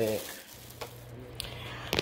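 Quiet room tone: a steady low hum with a couple of faint clicks.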